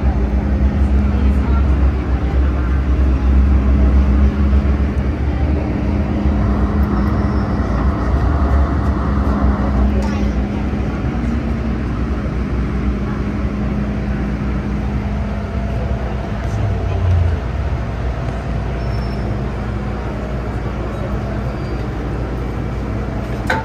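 MTR M-train electric multiple unit heard from inside the car as it slows along a station platform and comes to a stop: a steady low rumble of wheels and running gear with a humming motor tone that fades about halfway through as the train slows.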